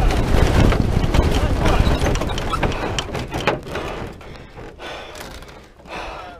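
Rushing noise and rattling inside the cockpit fairing of the Aerocycle 3 human-powered aircraft, with many sharp knocks. It dies away over the second half as the aircraft slows.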